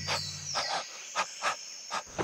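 A break in the dance music: the bass drops away and a handful of sharp, separate hits sound, unevenly spaced about half a second apart.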